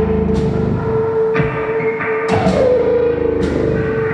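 Live experimental rock and electronic music: a long held note runs under the whole passage, a second note slides downward about two seconds in, and sharp crashing hits land roughly once a second.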